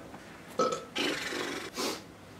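A man's short wordless vocal sound, burp-like, about half a second in, followed by breathy hissing that ends in a sharper hiss just before the end.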